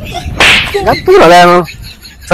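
A short swishing burst about half a second in, then a person's voice rising and holding one drawn-out note for about half a second.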